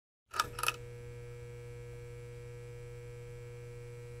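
Neon sign sound effect: two quick electric crackles as the tubes flicker on, then a steady electrical hum.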